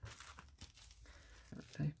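Plastic bags and packaging around lace trim crinkling as they are handled, followed by a brief spoken word near the end.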